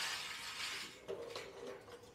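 Faint metal clinks and knocks as a steel piece is handled and set in the vise of an abrasive cut-off saw, with a few light strikes about a second in.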